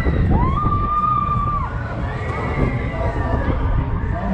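Riders on a swinging fairground ride shouting and screaming, with one long high scream held from about a second in, over a steady low rumble.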